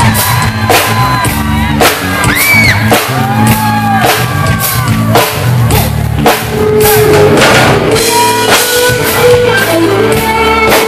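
Live pop-rock band playing loudly: a drum kit keeps a steady beat, about one hit a second, under acoustic and electric guitars.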